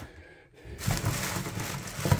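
Nearly silent for the first half second or so, then a plastic shopping bag rustling and crinkling as groceries are handled in it.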